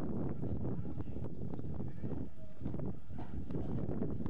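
Wind buffeting a camcorder microphone: a steady, gusting low rumble, with scattered light clicks on top.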